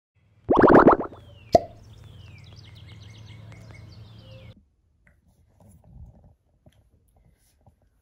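Logo intro sound effect: a loud quick run of plopping pops, a sharp click, then a steady low hum under repeated falling high sweeps that cuts off suddenly about four and a half seconds in.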